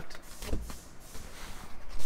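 Handling noise of a headliner being worked into place against a car roof: fabric rustling and scraping, with a dull thump about half a second in as a bow is pushed home.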